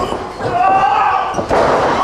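A wrestler slammed onto the wrestling ring's mat: one loud thud about a second and a half in. Before it comes a shouting voice.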